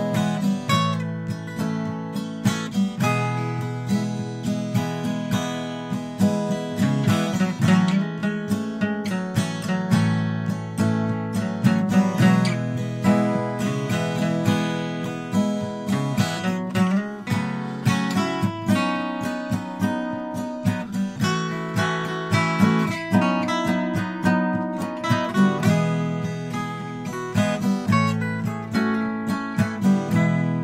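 Instrumental song intro: acoustic guitar strummed and picked in a steady rhythm, with no singing yet.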